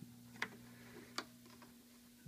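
Two faint clicks, a little under a second apart, from a hand working the wooden lid and brass latch of a record-player-box amp cabinet, over a faint steady low hum.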